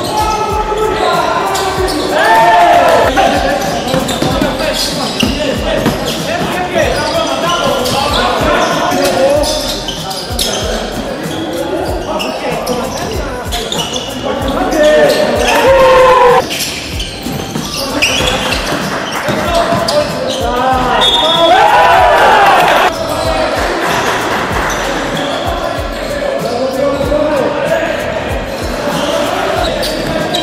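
Basketball dribbled and bouncing on a hardwood court, with players shouting to each other, all echoing in a large sports hall.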